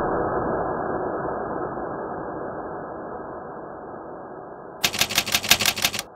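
A muffled noise that starts loud and fades slowly. Near the end comes a rapid run of typewriter keystroke clicks, about ten a second, a typing sound effect.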